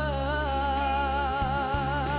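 A boy singing into a microphone, holding one long note with steady vibrato over a backing track.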